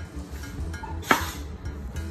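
A glass pie dish is set down on a kitchen countertop with one sharp clunk about halfway through, over steady background music.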